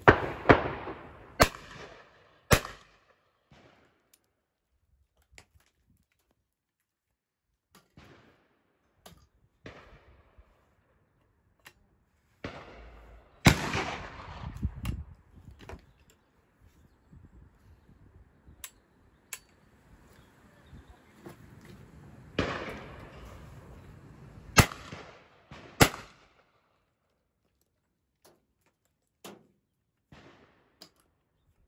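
Shots from a Charles Boswell 16-bore side-by-side hammer gun, each a sharp report with a ringing tail: one right at the start, another near the middle and more in the last third. Between them come shorter clicks and metallic handling sounds as the Jones under-lever action is opened, reloaded and the hammers cocked.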